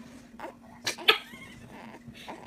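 A few short, sharp kissing smacks against a newborn baby's face, with a brief high little squeak about a second in, the loudest sound here.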